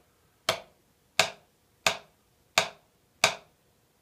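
Wooden drumsticks striking a rubber drum practice pad: five short, even taps about 0.7 s apart. They are slow single strokes, each struck from the same height and let bounce back up.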